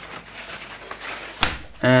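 Faint rustling of parts being handled on a workbench, then one sharp click about one and a half seconds in; a man's voice starts just at the end.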